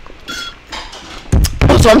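Dishes and cutlery clinking in the background as someone washes up: a short ringing clink a quarter second in and fainter clatter after it. A loud dull thump comes about a second and a half in.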